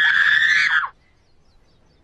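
A person screaming: one long, high-pitched scream that cuts off suddenly about a second in.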